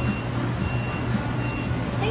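A high electronic beep repeating about every three quarters of a second over a steady low hum.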